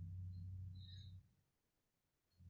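Near silence: a faint low hum that stops a little over a second in, leaving only room tone.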